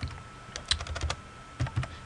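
Typing on a computer keyboard: a quick run of keystrokes around the middle, entering digits of an account number.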